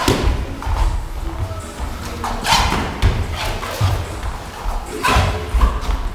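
Boxing sparring in a ring: thuds of gloved punches and feet on the ring canvas, with sharp impacts at the start, about halfway through and near the end. Music plays in the background.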